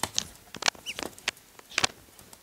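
Ducklings pecking and nibbling, their bills making a few irregular sharp clicks, with one short high duckling peep about a second in.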